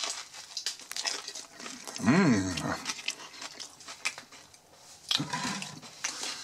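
Chewing a mouthful of döner in toasted flatbread, with small crunches and moist clicks throughout, and a short hummed 'mmh' that rises then falls about two seconds in.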